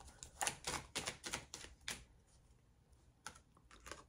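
Tarot cards being shuffled by hand: a quick run of soft card snaps for about two seconds, then a couple of faint ones near the end.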